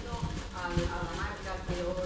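Faint, indistinct voices in a room, with a few soft, low knocks.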